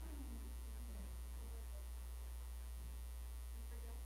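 Steady low electrical hum under quiet room tone.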